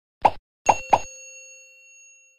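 Animated end-screen sound effects: a short pop, then two quick pops about a quarter second apart, followed by a bell-like ding that rings on and slowly fades.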